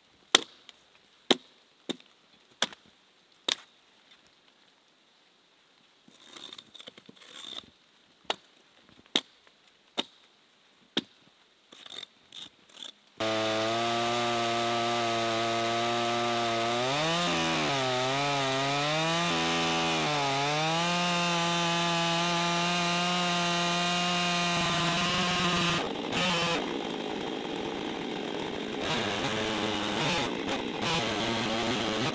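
A series of sharp knocks, about one a second, then a chainsaw starts running suddenly and rips lengthwise along a log. Its engine pitch dips and recovers a few times under load before holding steady as it cuts.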